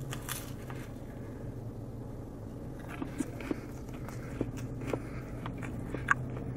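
A man biting into a Taco Bell quesalupa and chewing it, with scattered faint crunches and mouth clicks over a steady low hum.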